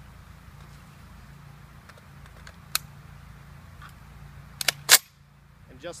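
Sharp metallic clicks of a Saiga-12 shotgun and its detachable magazine being loaded and readied: single clicks about three and four seconds in, then a quick cluster ending in a loud snap just before five seconds.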